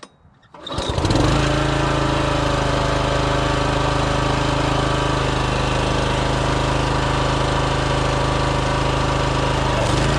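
The gas engine of a 27-ton Troy-Bilt log splitter starts about a second in, then runs steadily at a constant speed.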